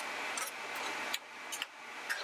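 A faint steady hiss with a few light clicks and scrapes: a wooden spoon stirring sauce-coated tortilla chips in a frying pan.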